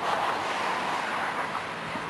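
Tram running along its rails, a steady noise of wheels on track that is loudest in the first second and eases off.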